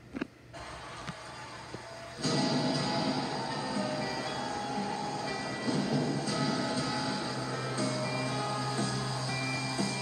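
A few faint clicks, then show music from a television starts suddenly about two seconds in and plays on steadily, picked up off the TV's speaker.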